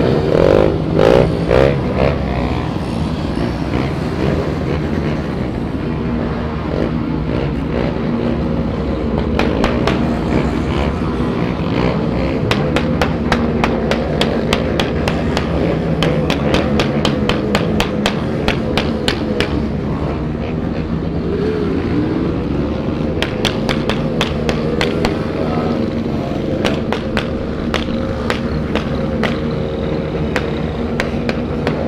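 Motorcycle engines running at low speed in a slow group ride, the rider's own Honda XRE 300 single-cylinder engine steady under the other bikes around it. A louder wavering burst comes in the first couple of seconds, and frequent sharp clicks run through most of the rest.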